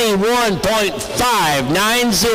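A man's voice calling the race, speaking continuously; no engine or other sound stands out from the speech.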